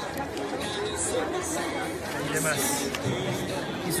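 Crowd chatter: several people talking at once in the background, with a few short rustles of school supplies being handled about a second in and again past the middle.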